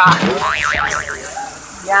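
A cartoon-style 'boing' sound effect whose pitch wobbles quickly up and down for about a second, over the steady rush of a small waterfall.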